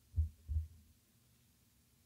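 Two short, low thumps in quick succession, about a third of a second apart.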